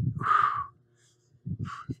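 A man's sharp, forceful exhale through the mouth on the effort of a dumbbell shoulder press, followed near the end by a shorter, softer breath.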